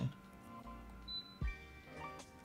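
A single short, high-pitched electronic beep at about 4,000 Hz, lasting a fraction of a second, a little over a second in. It is the computer's PC speaker driven by the Linux beep utility, heard faintly over steady background music, with a soft click just after it.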